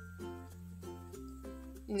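Soft background music: short plucked notes over a held bass line that changes pitch about a second in.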